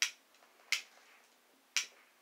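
An old lighter being struck three times, sharp clicks about a second apart, as it is worked to get a flame going for a pipe.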